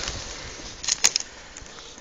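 Footsteps rustling and crunching through dry grass and undergrowth, with a few sharp cracks about a second in.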